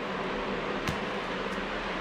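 Steady fan-like room hum, with a single faint click a little under a second in.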